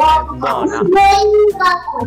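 A child's voice in a drawn-out, sing-song call, holding one note for about a second in the middle, over background music.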